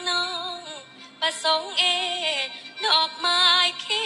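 A young woman singing a Thai song into a microphone: long held notes with wavering ornaments, in three phrases with short breaks between them, over faint backing music.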